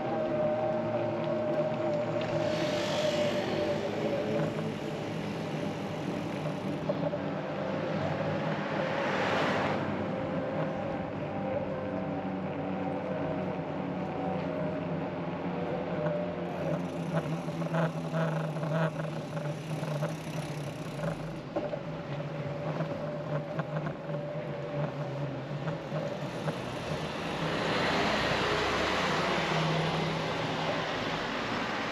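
Street noise during an e-bike ride: a steady hum and whine from the bike, with hissy rushes of passing traffic or wind now and then, the loudest near the end.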